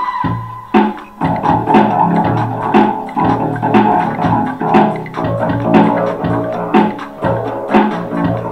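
Electric bass guitar plucked in a melodic bass line over backing music that has a steady beat, with a strong hit about once a second.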